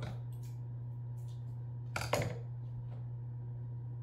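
A few light clicks and one brief clatter about two seconds in, over a steady low hum: a cockatoo rummaging among toys in a plastic bin.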